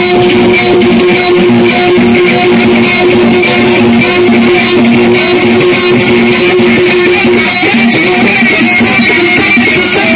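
Loud amplified live music through a PA loudspeaker: a plucked string instrument over a steady beat, with a long held note that breaks off about three-quarters of the way through.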